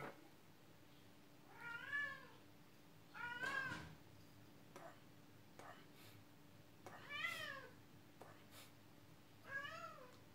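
A cat meowing four times, faintly: short calls that each rise and fall in pitch. A few faint clicks fall between the calls.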